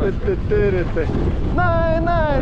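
Wind buffeting the action-camera microphone and a snowboard sliding over groomed snow, with a person's voice on held and gliding notes over it.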